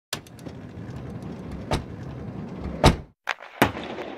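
Sound effects for an animated logo intro: a rushing whoosh with sharp hits, the loudest about three seconds in, a short cut to silence just after it, then two more hits as the noise fades.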